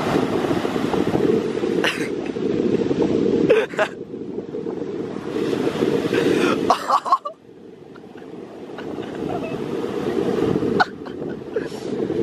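Strong wind rumble on the microphone over surf breaking on the beach, with a few short, sharp clicks. The rumble drops away suddenly about seven seconds in, then builds back up.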